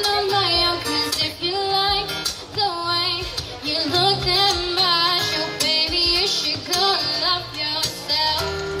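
A young woman singing a melody into a microphone, with vibrato on held notes, over a strummed acoustic guitar, played through a small PA speaker.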